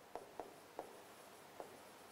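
A pen writing on a board: a few faint, short strokes and taps, spaced unevenly.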